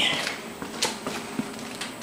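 Faint steady background noise with a couple of light clicks, one about a second in and another about a second and a half in.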